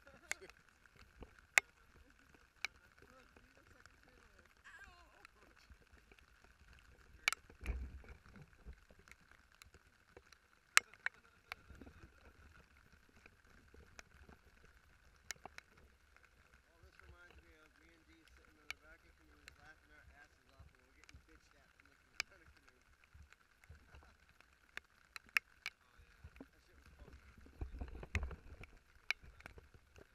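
Raindrops ticking irregularly on a waterproof action-camera housing, over a faint steady hiss of rain falling on the river. Two low rumbles stand out, about eight seconds in and near the end.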